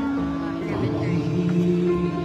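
Live band playing a slow ballad with sustained chords, and a man's voice singing a long held note over it.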